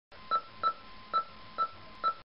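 Four short electronic beeps, all on the same pitch and unevenly spaced, over a faint steady hiss and a thin background hum.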